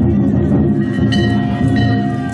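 Danjiri festival music (hayashi) played aboard the float: a drum with struck metal gongs ringing over it, continuous and loud.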